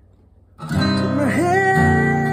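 Acoustic guitar, tuned down a whole step, strummed about half a second in and left ringing, with a voice singing a held note over it that dips and comes back up.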